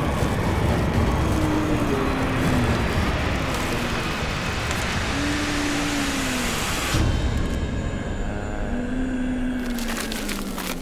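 Horror-show sound design: a loud rushing noise with a few slow, low gliding tones under it. About seven seconds in it cuts abruptly to a darker, lower rumble.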